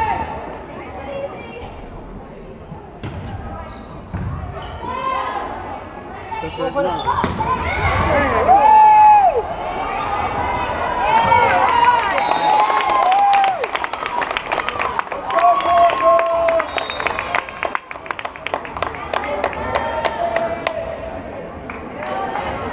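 Indoor volleyball rally in a gymnasium: players and spectators shouting and calling out, rising and falling, loudest a few seconds in and again near the middle, over many sharp knocks and slaps of the ball being played.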